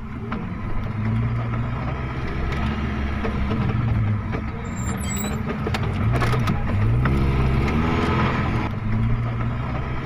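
Pickup truck engine running at low revs as the truck creeps down a steep gravel slope, with a steady low hum whose pitch wavers and dips about two-thirds of the way in.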